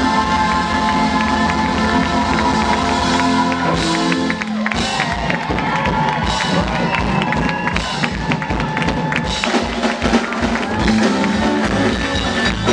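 Live rock and roll band with electric guitars and drum kit: a held chord rings for the first few seconds, then a steady drum beat takes over. The crowd cheers over the music.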